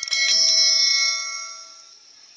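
Bell chime sound effect of a subscribe-button animation, sounded once as the notification bell is clicked and ringing out over about a second and a half.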